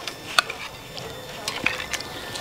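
Metal wok spatula clinking and scraping as braised lamb is scooped from the wok into a ceramic bowl: a few sharp clicks over a faint hiss.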